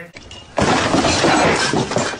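A sudden, very loud, harsh noise burst from a meme sound effect, starting about half a second in, lasting about a second and a half and cutting off abruptly.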